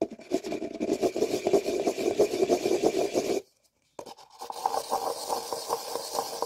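Two paper cups joined rim to rim being twisted and rubbed in the hands: a dense, rapid scraping of paper on paper. It stops about three and a half seconds in, and after a brief pause it starts again, lighter and higher.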